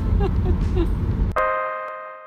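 Low, steady rumble of car road noise heard from inside a moving car. About two-thirds of the way through it cuts off suddenly to a bright ringing chime chord that fades away.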